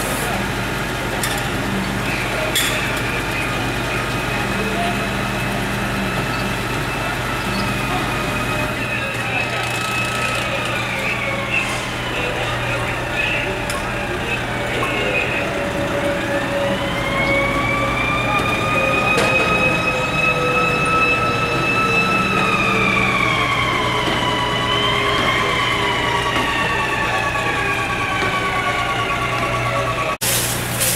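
Fire engine siren wailing in long, slow glides. One tone sinks over several seconds, then the siren winds up sharply about halfway through and slowly falls off again, over a steady low hum.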